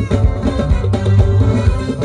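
A live band playing upbeat music: acoustic guitar over bass guitar and drums, with a steady beat.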